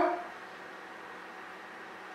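Quiet room tone: a faint, steady hiss, with the tail of a spoken word fading out at the very start.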